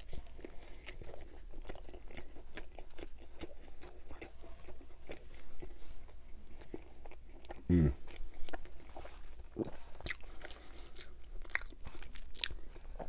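Close-miked chewing of a coney dog (hot dog in a soft bun with mustard): a bite at the start, then steady wet chewing full of small mouth clicks and crackles. A short vocal sound from the eater about eight seconds in.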